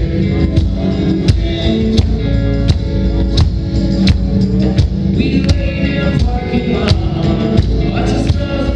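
Live indie rock band playing, with drums keeping a steady beat under sustained keyboard and guitar chords, heard from among the audience in the hall.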